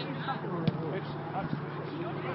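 A football struck once: a single sharp thud about two-thirds of a second in, over distant players' shouts and voices.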